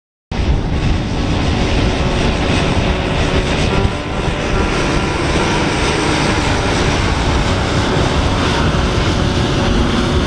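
Twin-engine turboprop plane's engines and propellers running steadily as it moves on the ground, cutting in sharply a moment in.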